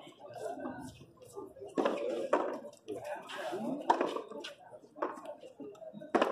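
A handball rally: the rubber ball is slapped by hand and smacks against the concrete frontón wall and floor, several sharp hits about a second or two apart. Players' voices call out between the hits.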